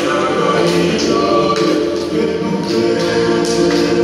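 A group of voices singing a Tongan song in harmony, holding long chords, with light percussive strokes under the singing.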